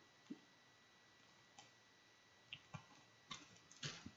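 Near silence with a few faint, scattered clicks, more of them near the end, from fingers pressing the seal of a small resealable plastic bag closed.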